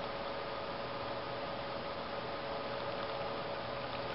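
Steady hiss of background room tone with a faint even hum, no distinct event.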